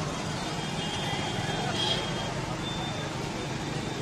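Busy street ambience: traffic noise with people talking in the background. A brief high-pitched tone sounds about two seconds in.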